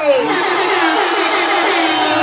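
Live concert noise: music and a crowd of many voices together, with a pitched tone gliding down in the first half-second.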